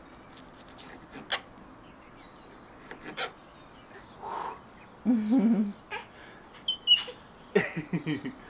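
Short bursts of laughter and playful high squeals, starting about five seconds in, after a few light clicks and knocks.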